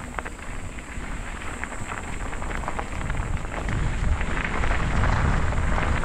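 Bicycle tyres crackling over a gravel road, with wind rumbling on the microphone that grows louder about halfway through.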